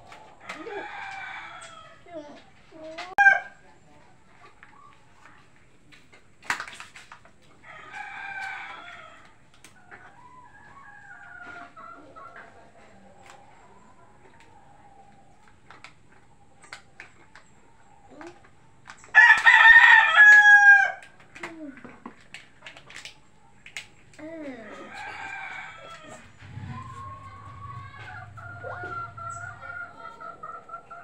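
Roosters crowing four times, each crow about a second and a half long and falling in pitch at the end; the loudest crow comes about two-thirds of the way through. Fainter calls lie between the crows.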